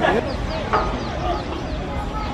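A bird calling in a rapid series of short, high chirps that fall in pitch, about five a second, with voices in the background.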